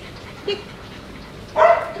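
A Shiba Inu gives one short, loud bark near the end as it leaps and kicks off a wall.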